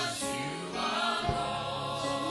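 Gospel vocal ensemble singing a slow worship song in long held notes, with a brief low thump about a second in.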